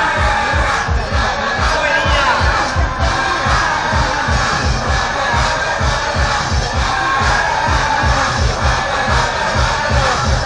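A crowd shouting and cheering over a steady drumbeat of about three beats a second, from a temple procession's drum.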